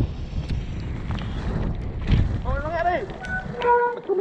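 Mountain bike descending a leaf-covered dirt trail: wind noise on the helmet microphone and steady tyre rumble, with a few short knocks from the bike. A rider's voice calls out over it in the last second and a half.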